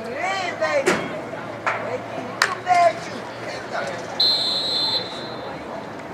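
Shouting voices and a few sharp claps or knocks, then a referee's whistle blown once, under a second long, about four seconds in.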